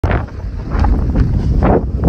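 Wind buffeting the microphone: an uneven, loud low rumble with irregular gusts.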